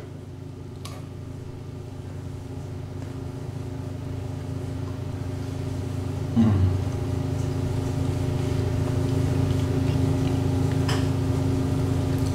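A steady low hum that grows gradually louder. About six seconds in, a short closed-mouth 'mmm' of enjoyment comes from a man eating a date, falling in pitch.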